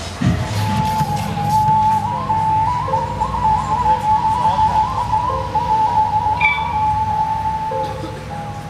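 Rock band music: a long held lead melody that steps up and down in pitch, over a steady low drone.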